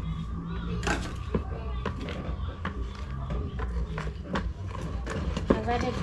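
Wooden stick stirring thick liquid detergent in a plastic basin, with irregular short knocks and clicks as it strikes the basin's sides, over a steady low hum.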